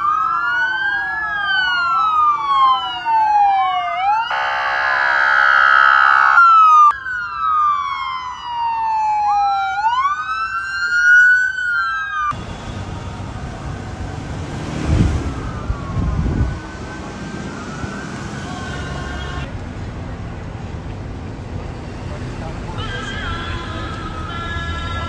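Police car sirens, several at once, sweeping rapidly up and down and overlapping, broken by a blaring horn tone about four seconds in, then a slower rising and falling wail. About twelve seconds in the sound cuts to faint distant sirens under a rumbling outdoor hiss, with a steady horn tone near the end.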